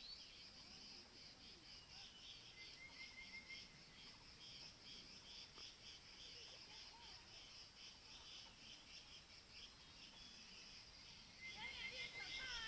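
Faint, steady chorus of chirring insects, a continuous high buzz with rapid pulsing chirps over it. A short quick trill of repeated notes comes about three seconds in, and a few falling notes start near the end.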